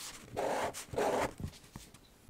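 Sakura Pigma Micron fineliner pen scratching across Canson vellum paper in two quick back-and-forth shading strokes, each about half a second long.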